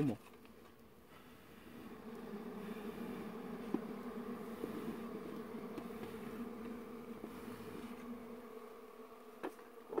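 A colony of honeybees swarming over an exposed comb, buzzing steadily as they are smoked. The buzz swells about a second and a half in and eases near the end.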